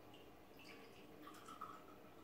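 Vodka poured in a thin stream from a glass bottle into a small glass measure, a faint trickle with a light ringing tone in the second half as the glass fills.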